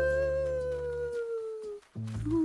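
A long, drawn-out ghostly 'woooo' wail that rises slightly, then slowly falls and fades out just before the end, over low sustained music notes.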